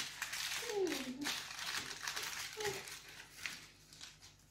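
Soft crinkling and rustling of hands working biscuit dough and plastic cutters on a lined baking tray, strongest in the first second or so. A short falling vocal sound from one of the children is heard about a second in.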